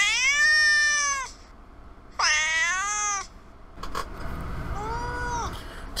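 A domestic cat meowing three times: two loud, drawn-out meows of about a second each, then a shorter, fainter one near the end.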